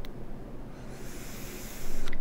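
Air hissing through the airflow holes of a HAAR rebuildable tank atomiser during a restricted direct-to-lung vape draw. The hiss starts about a second in and grows to a louder rush near the end.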